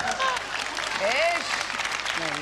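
Live theatre audience applauding, with a few voices laughing over the clapping.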